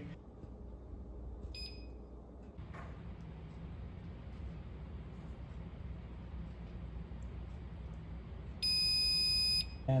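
Electric oven's control panel beeping: a faint short beep about a second and a half in, then a loud steady electronic beep of about one second near the end as the cook timer runs out. A low steady hum lies underneath.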